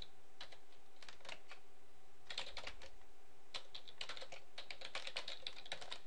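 Typing on a computer keyboard, a few quick runs of keystrokes with short pauses between them.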